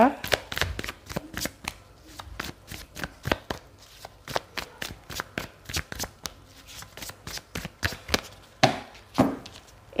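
A deck of tarot cards being shuffled by hand, the cards slapping and slipping against each other in a quick, irregular run of light clicks.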